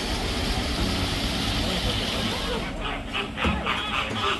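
A steady rushing outdoor noise with a low rumble, then background music with a quick, even beat starting a little under three seconds in.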